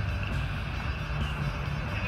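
Road traffic noise from a busy city street: vehicle engines and tyres running past in a steady, dense rumble.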